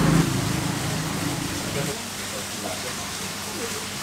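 Steady rush of water from a small fountain, with faint voices in the background.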